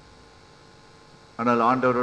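A steady faint electrical hum through a microphone's PA system during a pause in a man's speech; the amplified voice comes back in suddenly about one and a half seconds in.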